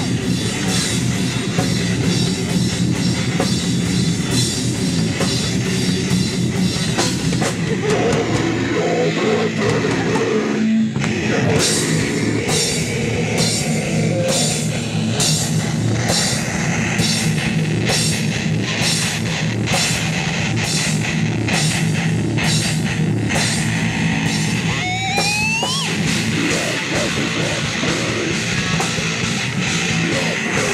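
Live metal band playing: heavily distorted electric guitars, bass guitar and a drum kit driving dense, fast drumming. The band thins out briefly about ten seconds in, and a short rising squeal comes about five seconds before the end.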